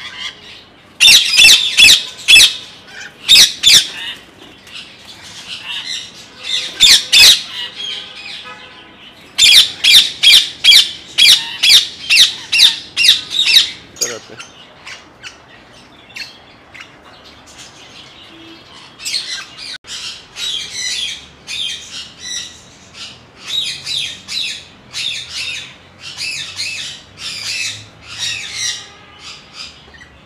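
Parrots squawking: runs of loud, shrill screeches over the first half, then softer, busier calling in the second half.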